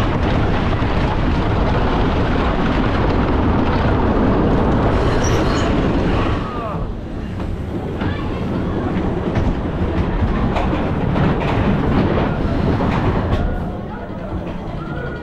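Train of an S&S wooden roller coaster running fast over its wooden track with a loud, steady rumble, then slowing sharply about six seconds in, with a brief squeal, and rolling slowly into the station with a series of clacks.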